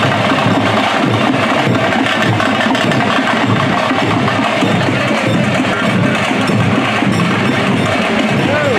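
A troupe of folk drummers playing large barrel drums in a fast, steady, loud beat.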